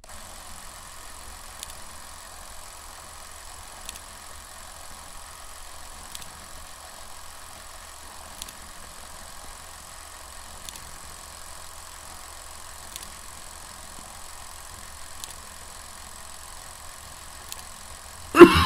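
Steady low hum and hiss of background noise, with a faint click repeating about every two seconds.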